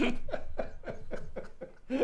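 Two men laughing hard together, a quick run of short laughs that tails off near the end.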